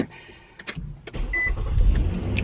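A car engine's low rumble builds up about a second in and keeps running, with a brief high beep partway through.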